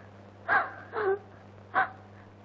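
A woman sobbing: three short, broken cries, the first falling in pitch, over a steady low hum.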